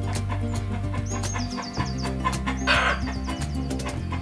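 Instrumental background music with a steady bass line and melody, with a short, harsh call from a rooster rising over it about three quarters of the way through.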